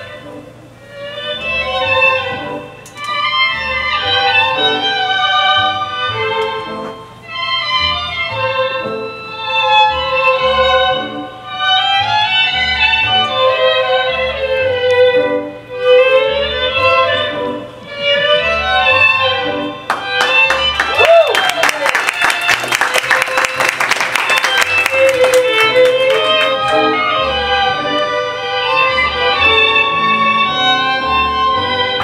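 Argentine tango music for the dance, a violin-led melody over a pulsing bass, coming in phrases with short breaks between them. About two-thirds of the way through comes a stretch of fast, sharp repeated strokes before the melody returns.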